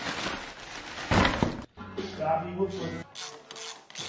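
A crinkly plastic parts bag rustling as it is handled, louder about a second in, then cut off abruptly.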